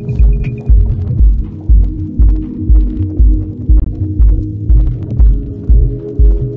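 Deep house music: an even kick drum about twice a second under held low synth chords, with light high percussion ticks. A high pulsing synth note stops under a second in.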